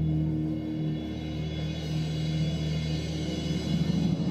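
Wind orchestra music: the band holds slow, sustained low chords.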